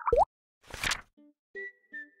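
Cartoon transition sound effects: a quick rising bloop at the start and a short whoosh about half a second later. About a second and a half in, a light tune of short, evenly spaced plucked notes begins.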